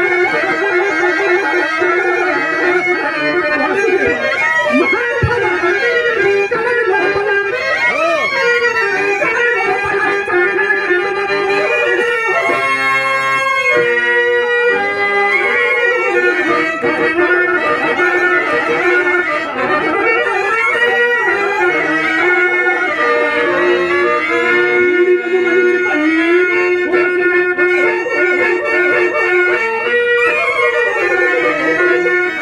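A male stage singer delivering a Telugu padyam (dramatic verse) in long, ornamented held notes that bend and glide, over a sustained harmonium accompaniment. About halfway through the voice gives way briefly to the instrument.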